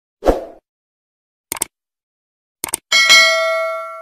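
Subscribe-button animation sound effect: a short low pop, then two quick double clicks about a second apart, then a bright bell ding that rings on and fades out.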